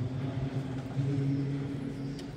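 Low male voices chanting held notes during the Mass, with a brief break about a second in.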